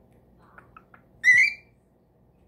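Cockatiel giving a few soft short chirps, then one loud whistled call, under half a second long and rising slightly, just after the middle.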